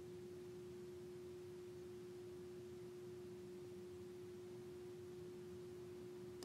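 A faint steady hum at one constant pitch over quiet room tone.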